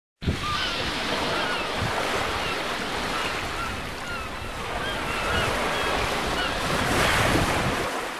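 Ocean surf washing and breaking in a steady rush, with short bird calls chirping through it. The surf swells near the end and then begins to fade.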